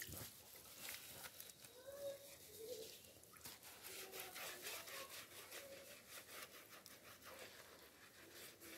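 Faint scrubbing of a bar of soap and hands on wet skin, a run of quick repeated rubbing strokes.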